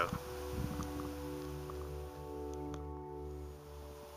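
Background music with steady, held chords.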